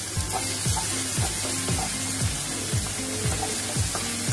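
Chopped vegetables sizzling in hot oil and butter in a nonstick kadai, stirred and tossed with a wooden spatula: a steady frying hiss with regular strokes about twice a second.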